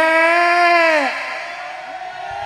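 A singer holds a long, loud note at the end of a sung line in a gambang kromong stambul song, with the drums dropped out. About a second in, the pitch slides down and the note fades away.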